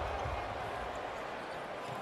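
Live basketball game sound in an arena: a steady hum of crowd and court noise, easing slightly, with the ball and play on the hardwood court.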